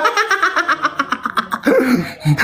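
Laughter in a rapid run of short, high-pitched pulses that fades out after about a second and a half.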